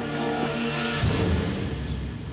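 Tense background music with held tones; a rising whoosh peaks about a second in and gives way to a low rumble.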